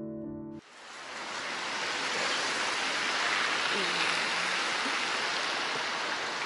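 Piano music stops abruptly in the first second. A steady hiss of rain falling on wet pavement then fades in and holds.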